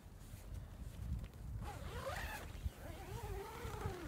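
A tent door zipper being pulled in long strokes, about a second and a half in, a rasp that rises and falls in pitch with the pull, over low rustling.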